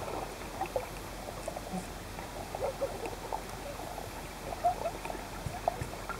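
Swimming pool heard underwater: a steady muffled water wash with scattered short bubbly blips and clicks from people moving through the water.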